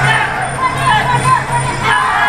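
Traditional Thai sarama fight music: a pi java oboe playing a wailing melody that slides and bends up and down, over a steady low tone.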